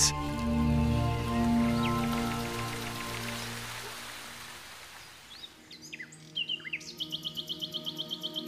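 Soft background music fading out over about five seconds. Then come forest birds: a few short chirps, and from about seven seconds a fast, even run of high notes.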